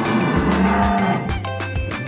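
A dairy cow mooing once for about a second and a half, over background music with a steady beat.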